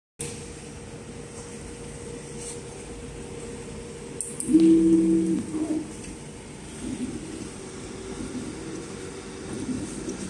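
Automatic PCB soldering robot running with a steady low hum; a few clicks a little past four seconds, then about a second of a steady two-note whine from its stepper motors as the soldering head travels, followed by fainter, shorter motor sounds.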